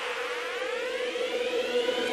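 Synthesizer riser in electronic outro music: a steady held tone under several sweeps that rise in pitch.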